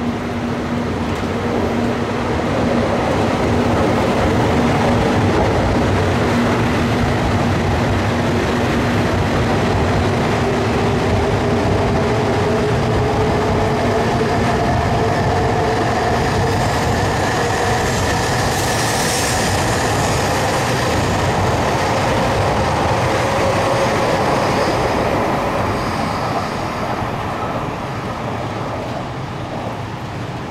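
E956 ALFA-X Shinkansen test train rolling along a station platform track: a steady rumble of wheels and running gear with a motor whine that slowly rises in pitch. A brief high hiss comes about two-thirds through, and the sound fades near the end.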